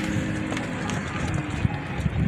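Camels' feet thudding and scuffing irregularly on sandy ground as the herd comes down the slope at a trot.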